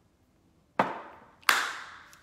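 Two hand claps a little under a second apart, the second louder and sharper.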